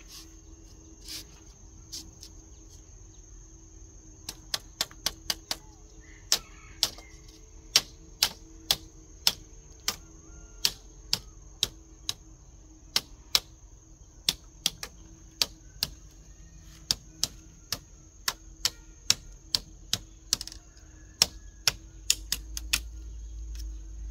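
Bamboo slats clicking and knocking sharply as they are worked by hand into a bamboo lattice panel. The clicks start about four seconds in and come roughly twice a second, sometimes in quick runs, over a steady high-pitched tone.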